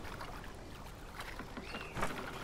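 Water lapping and trickling gently against a drifting wooden rowboat's hull, with one short squeak that rises and falls near the end.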